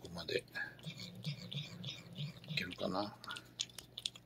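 A cat licking a paste treat from a squeeze tube: quick, repeated wet licks, several a second. A person says a short word near the end.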